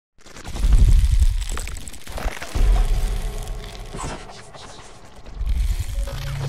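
Intro music for a logo animation: cinematic sound design with two loud deep bass swells in the first half, a quieter stretch, then a swell building again near the end.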